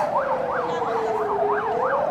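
Ambulance siren sounding in yelp mode, a quick rising and falling sweep repeating about three times a second. Beneath it runs a slower wailing tone that falls and then climbs again.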